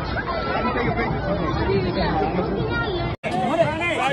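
Several voices talking over one another, the chatter of a small group of people close by, cut off by a brief dropout about three seconds in.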